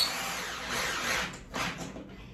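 Corded electric drill driving a screw into a drawer frame panel: the motor runs under load and trails off, with one brief further burst about a second and a half in.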